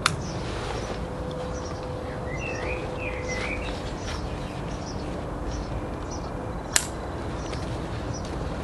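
Two sharp plastic clicks of quick-release strap connectors snapping together, one at the start and one near the end, over steady outdoor background noise. A bird chirps a few times in the middle.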